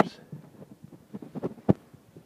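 Footsteps going down carpeted stairs: a run of soft, dull thuds with one sharper thump near the end.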